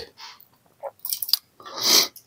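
Small mouth clicks and an audible breath during a pause in speech, the breath swelling up near the end.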